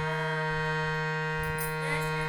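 Harmonium holding steady sustained notes, with a child's voice singing over it; the sung pitch bends near the end.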